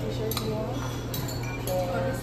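Metal serving spoons clinking against small bowls at a buffet condiment station, several short light clinks, with voices in the background.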